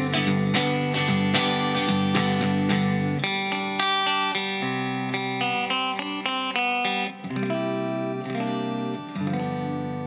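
Electric guitar on its humbuckers played through an Orange Thunderverb 50 valve amp head on a clean setting, gain turned down: strummed chords for the first few seconds, then picked single notes, then a chord struck about nine seconds in and left to ring and fade.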